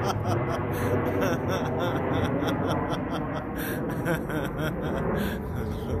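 Airplane flying overhead: a steady low rumble that runs through the whole stretch, with faint voices under it.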